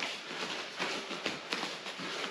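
Bare feet stepping and shuffling on rubber gym mats during shadowboxing footwork, a scatter of short soft taps.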